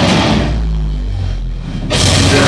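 Live heavy metal band drops out, leaving a deep, held bass note on its own; the note steps up in pitch about a second in. The full band comes back in at the end.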